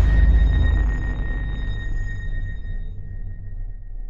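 Electronic outro sting: the deep low rumble of a boom fading slowly under a thin, steady high tone, dying away just after the end.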